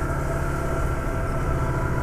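Motorcycle engine running at a steady speed while riding, a constant hum with road noise and no change in revs.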